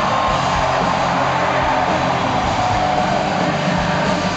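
Live rock band playing an instrumental passage in an arena: drums and guitars in a loud, dense, steady wash, with regular drum hits.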